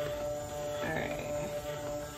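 Electric stick blender running steadily in a pitcher of goat-milk soap batter, a constant motor whine, blending the oils and lye to emulsion.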